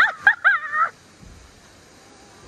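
A few short, high-pitched vocal cries in the first second, then quiet.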